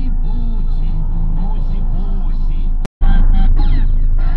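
Music with a voice in it, playing over the steady low rumble of a moving car heard from inside the cabin. The sound cuts out completely for an instant about three seconds in, then returns louder.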